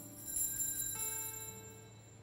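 Altar bells rung at the elevation of the consecrated host: a high ringing that swells about half a second in and fades away, over soft plucked acoustic guitar notes.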